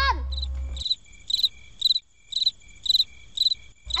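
Cricket-chirping sound effect: evenly spaced high chirps, about two a second, over an otherwise emptied soundtrack. It is the comic 'awkward silence' cue.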